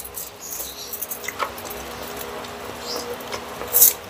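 Small, scattered crackles and clicks of crispy pork belly being picked apart by hand on aluminium foil and chewed, with one louder crunchy rustle near the end.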